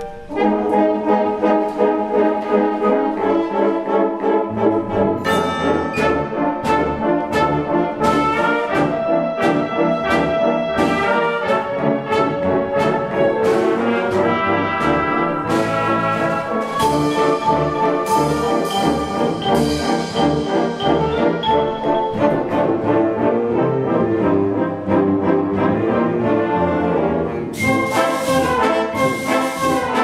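Concert wind band playing, brass to the fore over woodwinds, with a steady percussion beat from about five seconds in and a bright high shimmer near the end.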